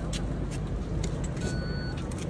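Low, steady rumble of a car engine idling with street traffic, with a few faint clicks and a short electronic beep about one and a half seconds in.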